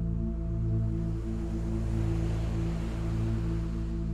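Ambient sleep music of steady, sustained drone-like tones, with a soft ocean-wave wash that swells and fades about halfway through.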